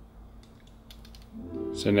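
Faint piano playing in the background, distant and steady under a quiet stretch, with a few light clicks from close by.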